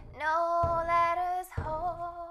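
A woman singing one long held note, sliding into a second note near the end, over backing music with a steady beat about once a second.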